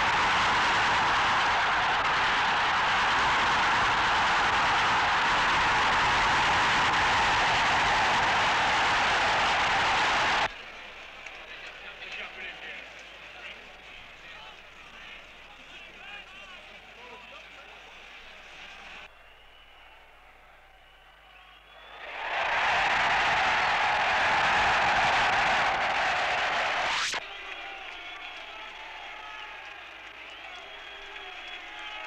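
A rugby match crowd cheering loudly for about ten seconds, then falling to a low murmur with scattered voices. A second loud burst of cheering rises about two-thirds of the way through, lasts about five seconds, and drops away again.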